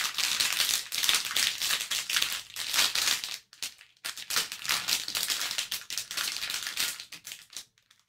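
Crinkly plastic blind-bag wrapper being handled and opened, a dense crackling that comes in two stretches with a brief pause a little past the middle.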